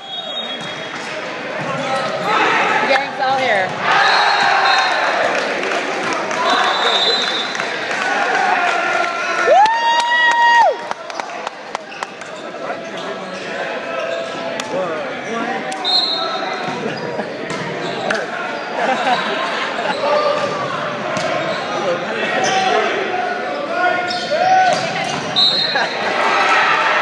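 Volleyball match in a reverberant gymnasium: crowd and players' voices throughout, with ball thumps and a few short, high sneaker squeaks on the hardwood. About ten seconds in, a single held tone sounds for about a second.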